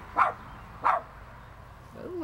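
A dog barking twice, two short sharp barks about two-thirds of a second apart.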